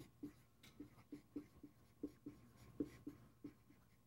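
Dry-erase marker squeaking and scratching across a whiteboard in short, irregular strokes, about three a second, as a word is written; faint.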